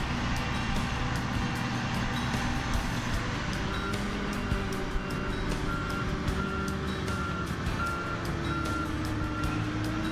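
A heavy truck engine running, with a reversing alarm beeping about twice a second from about four seconds in, and music playing over it.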